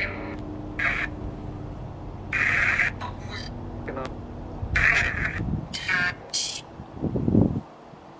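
Necrophonic ghost-box app playing through a phone's small speaker: irregular short bursts of hiss, each about half a second, some carrying clipped voice-like fragments, over a faint steady hum. A short low rumble comes about seven seconds in.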